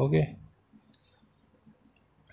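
A spoken "okay" at the start, then a few faint clicks and taps of a ballpoint pen on notebook paper as it finishes a line and moves down the page.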